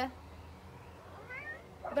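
Quiet background with one faint, short rising animal call a little past halfway.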